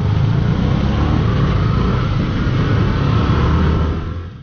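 Motorcycle engine running steadily at low speed, heard from the bike being ridden, under a steady rush of noise.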